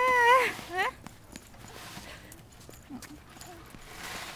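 A high voice calls out in a long, sliding, sing-song tone for about the first second. Then a small child's light footsteps tap faintly on a wet concrete path.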